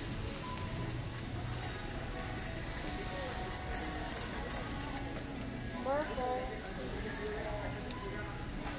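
Big-box store ambience: a steady low hum, faint distant voices and faint background music, with a short, louder voice about six seconds in.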